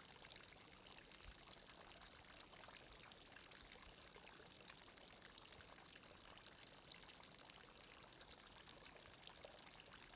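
Near silence: a faint, steady hiss of room tone and recording noise.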